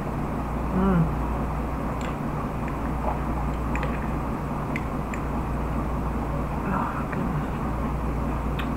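A steady background hum and hiss, with a spoon clicking lightly a few times against a cup of oatmeal and a short hummed "mm" about a second in.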